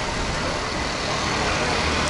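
Road traffic on a city street: passing vehicles make a steady rumble and tyre noise that grows a little louder near the end as a car approaches.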